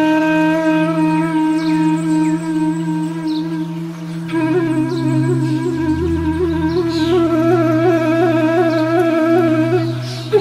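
Relaxing meditation music: a flute holding long notes over a soft, sustained low drone. About four seconds in, a new note begins with a slow, wavering vibrato.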